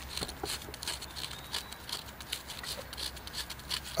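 Knife tip scraping a sheet of birch bark in quick, repeated short strokes, roughing up the bark to give it more surface area as fire-starting tinder.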